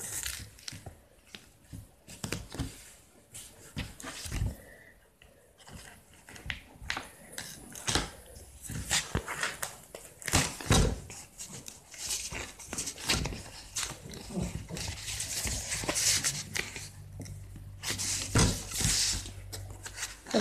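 Double-sided tape pulled from its roll and snipped with scissors, with paper handled on a tabletop: scattered sharp clicks of the blades and longer rasping peels near the end. The scissors are gummed up by the tape's adhesive.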